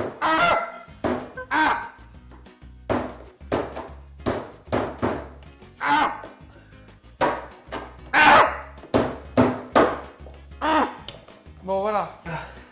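A corkscrew jabbed and worked into the lid of a small tin can of tomato paste: repeated sharp metal scrapes and thunks, roughly two a second, as he tries to pierce the can because the can opener won't cut.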